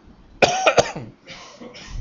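A man coughing: a sudden burst of several quick coughs about half a second in, followed by two softer, breathy coughs.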